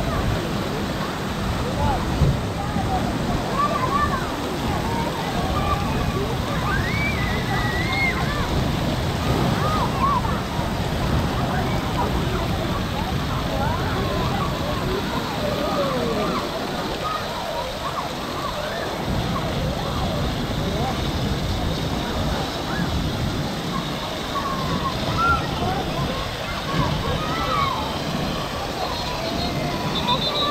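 Continuous rush of spraying and splashing water from a water-park play structure's fountains and pouring jets, with many children's voices calling out and chattering in the background throughout.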